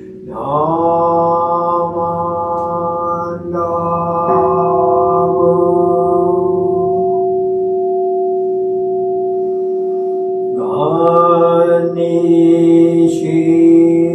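A Buddhist priest chanting a sutra solo in long, steady held tones on nearly one pitch. He pauses for breath just after the start and again near 11 seconds, then takes up the chant again.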